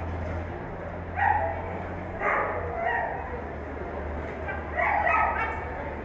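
A dog barking in short, sharp bursts, about four times over a few seconds, with a steady low hum underneath.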